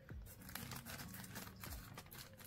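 Faint, irregular crinkling and rustling of packaging handled by hand, a scatter of small crackles.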